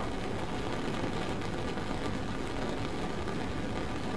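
Lit Bunsen burner's gas flame giving a steady rushing noise, with a low hum underneath.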